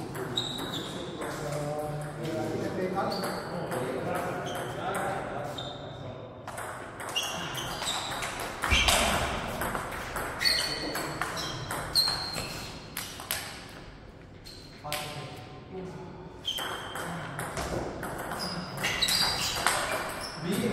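Table tennis rally: the plastic ball clicks sharply off the bats and the table in quick alternation, each hit with a short high ping. The hits begin about a third of the way in, after some voices.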